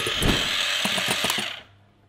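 Electric hand mixer whisking egg whites into glossy stiff-peaked meringue in a glass bowl, its speed turned down a little. It runs steadily, then is switched off about a second and a half in and winds down.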